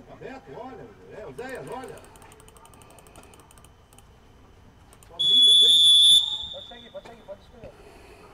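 Referee's whistle blown once, a single high-pitched blast lasting about a second past the middle, the loudest sound. Before it, faint shouting voices of players can be heard.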